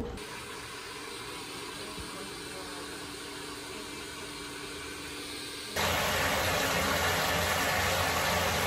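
Handheld hair dryer blowing steadily, with a faint motor hum. Near three-quarters of the way through it cuts abruptly to the louder, steady noise of a bathtub tap running water into a filling tub.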